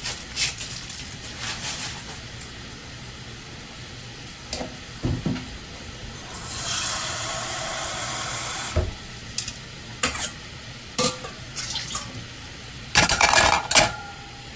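Kitchen work: scattered knocks and clinks of dishes and utensils, with a steady rush of running water for about two seconds in the middle and a busy clatter near the end.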